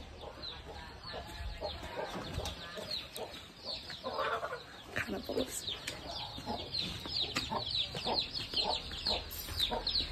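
Domestic chickens clucking amid a steady run of short, high, falling chirps.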